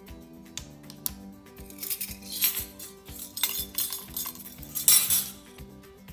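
Background music with a steady beat, over which come several loud bursts of metal clinking and scraping from a stainless steel flour sifter being handled as dry ingredients go in, the loudest just before the end.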